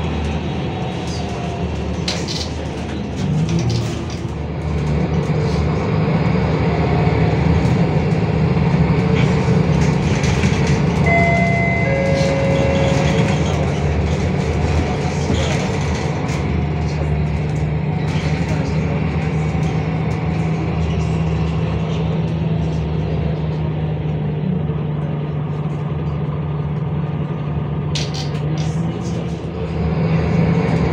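Cabin sound of a MAN NL323F city bus under way: its MAN D2066 diesel engine and ZF EcoLife automatic gearbox running, with a steady low hum that sets in a few seconds in and holds. A few short high tones sound about halfway through.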